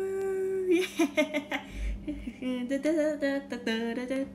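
A girl singing unaccompanied, holding a long note that ends about a second in, then laughing and going on humming and singing the tune.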